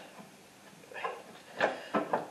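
A few soft metal clicks and scrapes, about a second in and again near the end, as a deck hanger rod and bracket on a Craftsman T110 riding mower are pushed into place by hand.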